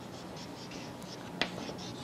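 Chalk writing on a blackboard: faint, scratchy strokes, with one sharp tap a little past halfway.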